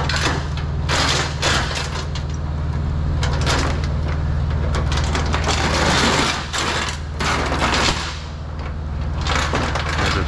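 Steel transport chain clanking and rattling against an aluminium flatbed trailer deck as it is gathered up and lifted by hand, with a steady low hum underneath.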